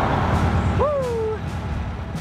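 Motorway traffic on the bridge overhead: a steady roar of tyres and engines. About a second in, a short squeal rises and then falls in pitch.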